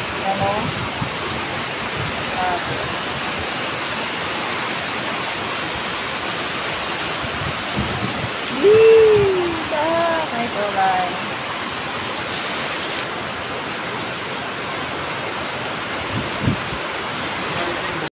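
Heavy rain pouring down steadily onto a flooded street. A voice calls out briefly about halfway through, the loudest moment.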